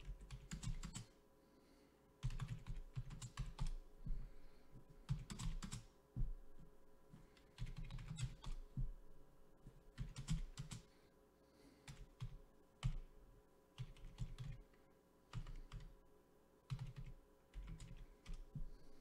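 Typing on a computer keyboard: bursts of rapid keystrokes about a second long, with short pauses between them.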